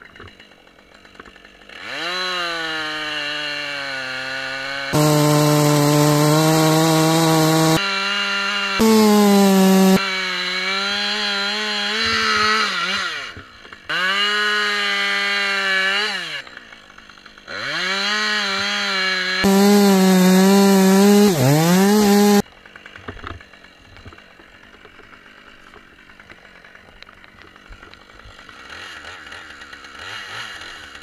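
Husqvarna 545 two-stroke chainsaw cutting into a beech trunk for a Danish pie felling cut. It runs in several bursts at full throttle, its pitch sagging as the chain loads in the wood and rising again as it frees. The engine sound cuts off suddenly about two-thirds of the way through.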